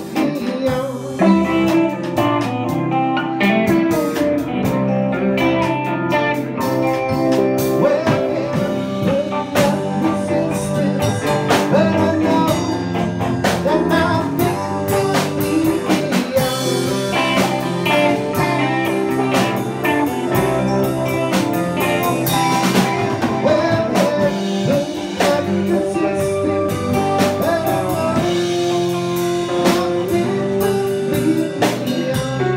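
Live band playing with electric guitars and a drum kit, keeping a steady beat.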